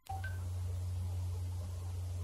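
A steady low hum that starts abruptly, with a short beep just after it begins.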